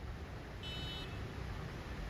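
Room tone: a steady low rumble, with a brief, faint, high-pitched electronic beep about half a second in.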